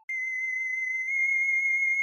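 Eerie, theremin-like electronic tone: a single high pitch with a slight wobble, starting abruptly and held steady.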